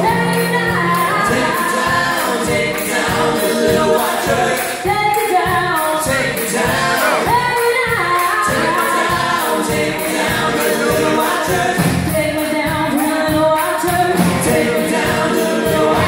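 Live country band: female lead vocals with backing vocal harmonies over electric guitars and drums, played at a steady, loud level.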